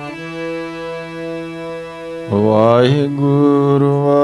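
Harmonium holding a steady chord, then about two seconds in a man's voice comes in over it, singing devotional kirtan with a wavering, ornamented pitch and louder than the harmonium.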